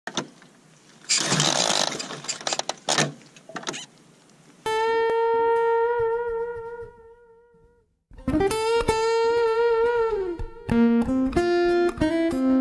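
Music: a short burst of crackling noise in the opening seconds, then a guitar holding long notes with vibrato that fade out, and after a brief gap more held notes leading into a melody picked note by note.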